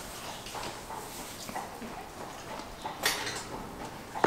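Quiet stable sounds: a horse shifting about in a box stall bedded with wood shavings, with light knocks and rustling and one sharper clack about three seconds in.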